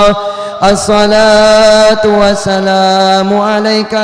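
A man's voice chanting an Arabic prayer (du'a) into a microphone, amplified. After a short break near the start he draws a single syllable out into one long, steadily held note.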